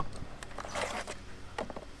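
Paper and a clear plastic bag rustling and crinkling as packaging is handled, loudest about a second in, with a few small ticks.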